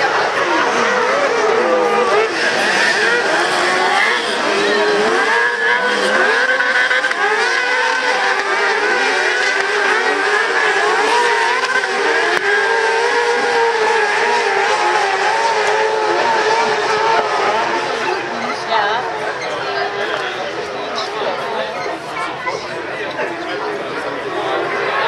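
Several crosscarts with motorcycle engines of up to 600 cc racing at once, their high-revving engines overlapping and rising and falling in pitch as they accelerate and ease off through the corners.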